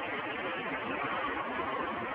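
Steady background noise with no single clear source standing out, without speech.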